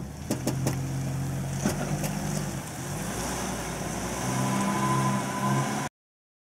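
Motorhome engine running as it pulls away towing the car, with a few clicks in the first second. The engine gets louder about four seconds in, and the sound cuts off abruptly just before the end.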